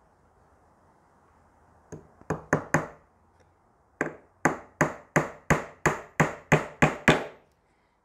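Claw hammer driving a thin panel pin through the soft pine top bar of a wooden beehive frame: four quick light taps about two seconds in, then a steady run of about ten sharper strikes, roughly three a second.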